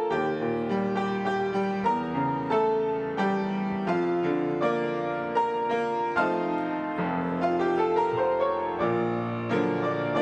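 Solo piano playing a slow, gentle piece. Chords and melody notes are struck about once or twice a second and left to ring.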